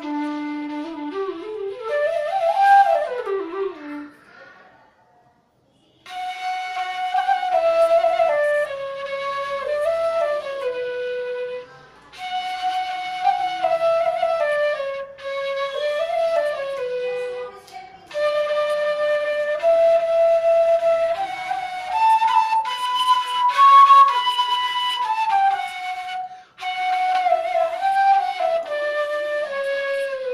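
G-scale bansuri (bamboo transverse flute) playing a melody in phrases. A run rises and falls near the start, then comes a short pause, then phrases with brief breaks between them. The tune reaches its highest notes about three-quarters of the way through.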